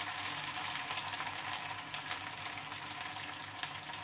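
Soya chaap pieces shallow-frying in hot oil in a kadhai: a steady sizzle with many small crackles and pops.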